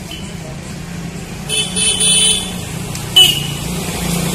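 A vehicle horn honks twice: a longer honk about a second and a half in, then a short, sharp, louder toot near the end, over a steady low hum.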